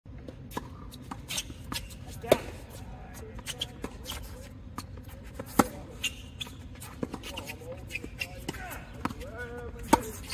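Tennis ball struck by rackets in a rally, one racket a Babolat Pure Aero Rafa Origin strung with Diadem Solstice 15L at about 53 lb: three sharp hits about three to four seconds apart, the last the loudest, with fainter knocks and taps between them.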